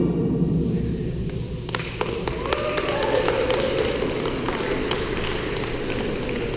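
Scattered taps and thumps of people walking and moving on a wooden hall floor, with a few faint voices in the background.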